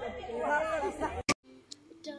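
Several people talking at once, the voices overlapping. The chatter cuts off abruptly a little past halfway with a click, leaving near quiet.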